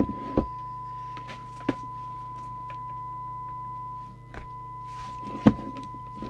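A steady, high-pitched test tone from the CB radio's speaker, the signal generator's modulation being received, over a low mains hum. The tone drops out for a moment about four seconds in. Several sharp clicks and knocks come from the radio and its leads being handled.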